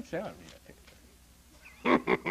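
A man's voice finishing a sentence, a pause of about a second with only faint room tone, then laughter starting near the end in quick, evenly spaced pulses.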